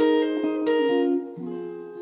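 Steel-string acoustic guitar strumming chords, with strokes at the start and about two-thirds of a second in; the chord then rings out and fades.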